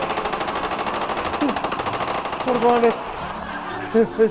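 Sustained rapid automatic-rifle fire, a fast even stream of shots fired into the air, cutting off abruptly about three seconds in. A man's voice calls out briefly over it.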